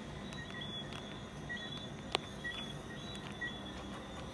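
Quiet outdoor night background: a low steady hum with faint, short high-pitched tones repeating about twice a second, and a single sharp click about two seconds in.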